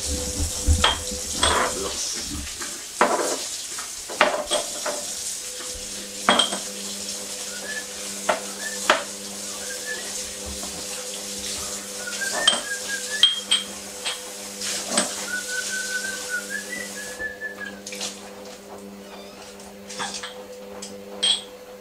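Dishes and cutlery clinking and knocking in a kitchen sink under a running tap. The water stops near the end.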